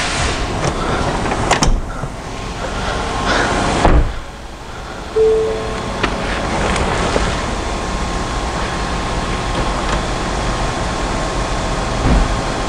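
Electric motor of a 2016 Ford Explorer's panoramic-roof power sunshade running steadily as the shade slides open, with a faint steady whine. A couple of sharp knocks come in the first four seconds.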